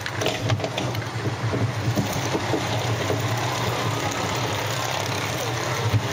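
A recorded roller coaster running: a steady low rumble with faint clatter from the train on its track.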